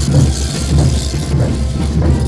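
Live festival band music for the street dance, driven by a steady, heavy bass-drum beat.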